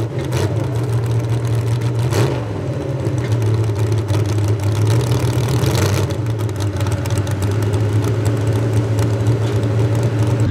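Small-block V8 of a 4x4 pulling truck idling steadily through its vertical exhaust stacks at the end of a pull, after being backed off from full throttle.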